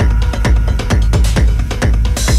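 Techno track from a DJ mix: a steady four-on-the-floor kick drum, about two beats a second, over a sustained bass with short hi-hat strikes between the kicks.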